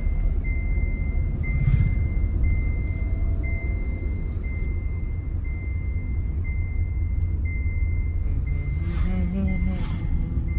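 A car's warning chime beeps steadily, a little faster than once a second, over the low rumble of road and engine noise inside the moving car's cabin.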